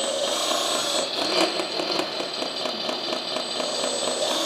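Hydraulic pump of an RC articulated dump truck running steadily with a high whine while its articulated steering is worked.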